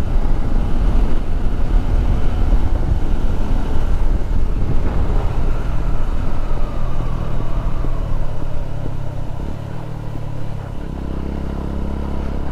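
Motorcycle engine running at road speed, with wind rumbling heavily on the rider-mounted microphone. Near the end the engine note settles into a steadier, slightly quieter low hum.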